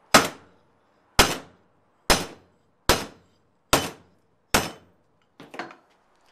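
Hand hammer striking a quarter-inch steel strap bracket on a makeshift steel anvil, six sharp blows a little under a second apart, each with a short metallic ring, hammering a distressed texture into the steel. A lighter metallic clatter follows near the end.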